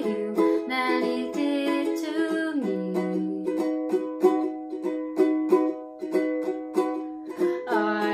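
Capoed ukulele strumming chords in a steady rhythm, about four strokes a second. The chord changes to a lower one about a third of the way in.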